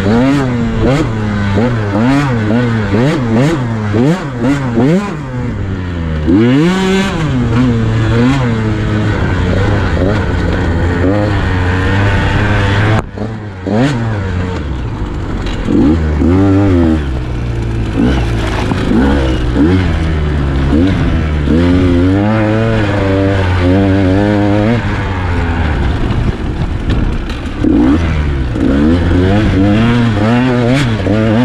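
KTM 150 XC-W two-stroke single-cylinder dirt bike engine revving up and down constantly with the throttle, with a brief drop about thirteen seconds in when the throttle is shut. Occasional knocks come from the bike over rough ground.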